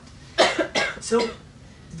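A person's brief cough about half a second in, in a small room, followed by a man's speech.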